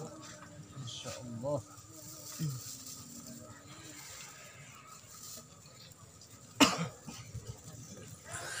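Low-level pause in a Quran recitation with faint background voices, then a sharp knock about two-thirds of the way in as the handheld microphone is picked up.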